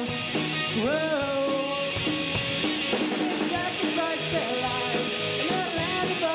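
Live rock band playing an instrumental passage: electric bass guitar, drums and a lead line with sliding, bent notes.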